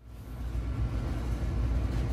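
A steady low rumble with a faint hiss, starting abruptly: the background noise of a model railroad shop's sales floor, recorded while walking through it.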